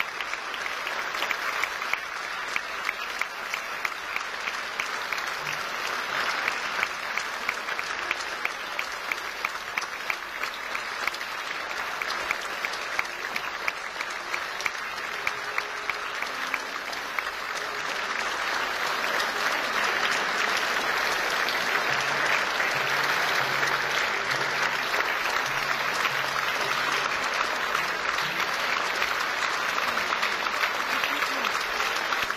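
Concert audience applauding steadily, with individual sharp claps standing out from the mass. The applause swells a little past halfway.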